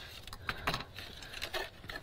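Die-cut card pieces being picked up and set down on a craft mat: a few light clicks and taps with soft rustling of card.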